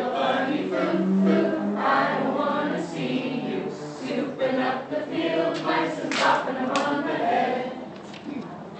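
A group of people singing together.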